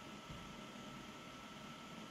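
Faint steady hiss of room tone with a thin, steady high tone running through it; nothing else happens.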